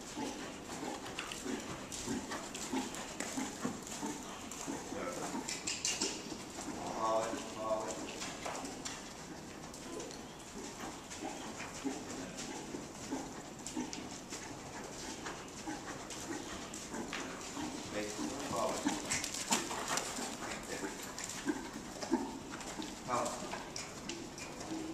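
A horse's hoofbeats on the sand footing of an indoor arena as it trots and canters, with a few short pitched calls about a third of the way in and twice near the end.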